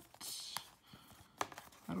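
Cardboard card holder handled by fingers trying to slide the metal card out: a short rustle near the start, then a couple of light clicks.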